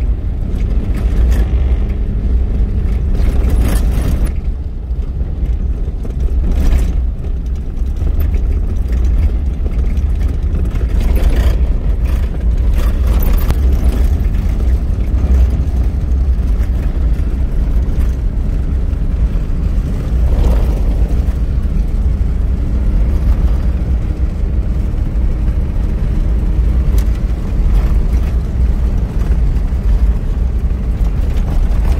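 Off-road vehicle driving across soft desert sand, heard from inside the cabin: a steady, loud low rumble of engine and tyres, with a few knocks and rattles as it rides over bumps in the sand.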